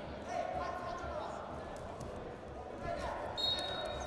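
Wrestling shoes squeaking and feet knocking on the mat as two wrestlers grip-fight and shoot for a takedown, with a short high squeak near the end. Voices shout from around the mat.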